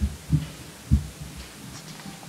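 Three short, dull low thumps within the first second, then a faint steady low hum.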